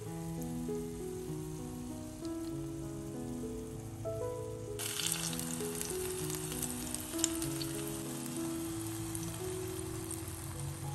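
Tomato rings frying in olive oil in a pan: a faint sizzle at first, then from about halfway a louder sizzle with scattered crackles as beaten egg goes into the hot oil. Soft background music with sustained notes plays throughout.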